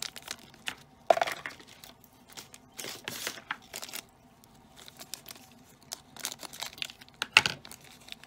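A shiny plastic blind-bag wrapper being crinkled and torn open by hand: irregular crackling in short bursts, the sharpest and loudest crackle near the end.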